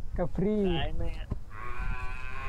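A person's voice over a phone call singing a drawn-out low note that swoops up and falls away, then a shorter one, sounding like a cow's moo. This is low-register 'kharaj' vocal practice. A steady buzzing tone comes in about one and a half seconds in.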